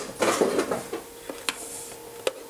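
Objects being handled on a workbench: a rustle early on, then a single sharp click about a second and a half in, under a faint steady hum.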